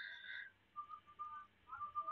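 Faint whistle-like tones: one steady high tone for about half a second at the start, then a few short, fainter peeps.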